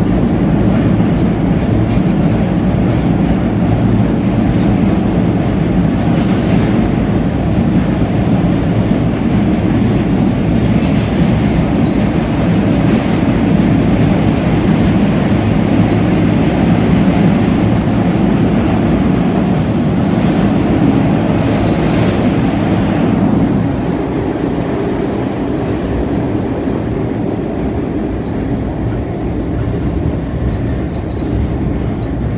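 Older MBTA Red Line subway car running, heard from inside the car: a loud, steady rumble of wheels on rail, with brief louder stretches of rail noise about six and twenty-two seconds in. It gets a little quieter from about twenty-four seconds on.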